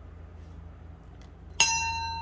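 A small metal bell-like chime struck once near the end, ringing on with a clear tone and several higher overtones that slowly fade; a faint low hum sits underneath before the strike.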